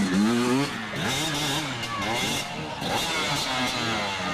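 Dirt bike engines revving up and down repeatedly as riders work over a race obstacle section, the pitch rising and falling about once a second.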